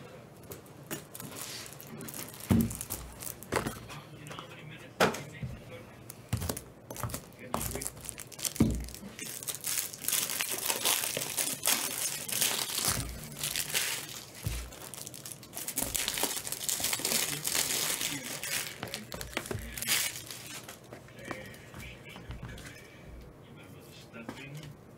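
Trading-card pack wrappers being torn open and crinkled. There are a few sharp knocks in the first several seconds, then dense crinkling for about ten seconds in the middle.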